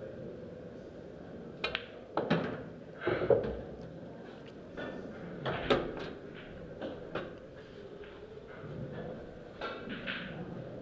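Pool balls clacking on a pool table: the cue tip striking the cue ball, balls colliding and an object ball dropping into a pocket, followed by further scattered sharp clacks over a low steady hall background.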